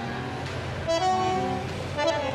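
Bandoneon playing held chords, with a new, louder chord about a second in.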